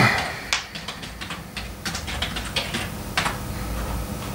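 Computer keyboard typing: scattered single key clicks, irregularly spaced, over a low steady room hum.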